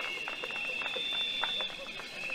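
Crowd applause dying down: scattered, irregular hand claps thinning out, with a steady high-pitched tone held above them.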